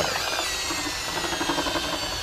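Electric drill spinning a paint mixer paddle in a five-gallon bucket of blue deck brightener and water, a steady motor whine that sinks slightly in pitch. The stirring is to dissolve the concentrate's crystals, which would otherwise clog a garden sprayer.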